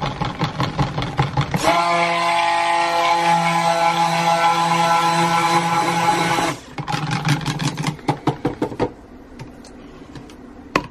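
Stick blender mixing colourant into cold-process soap batter in a plastic cup. It runs with a steady hum for about five seconds, then cuts off. A quick run of taps comes before and after.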